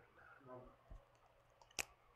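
Near silence with a faint murmured voice early on, then a single sharp click near the end.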